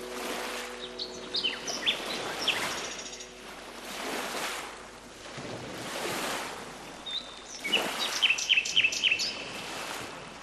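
Small birds chirping in two bursts of quick, repeated high chirps, about a second in and again near the end, over lake waves washing in and swelling every couple of seconds. The hum of a church bell dies away in the first few seconds.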